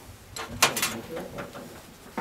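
A few short clicks and light scrapes of a screwdriver bit seating in and turning a Phillips screw in a stainless steel sheet-metal panel, in the first second, then quieter handling.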